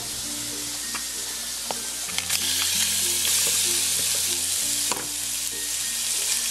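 Raw seasoned shrimp sizzling in a hot nonstick pan greased with olive oil spray, with a few sharp clicks of shrimp and utensil against the pan. The sizzle starts suddenly as they go in and grows louder about two seconds in.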